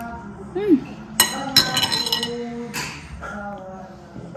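Metal spoon clinking against a dish three times, each strike ringing briefly.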